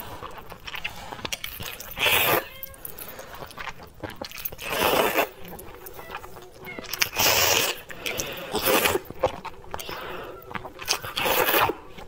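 Spicy glass noodles (vermicelli) slurped in loud, close bursts: five long slurps, roughly two to three seconds apart.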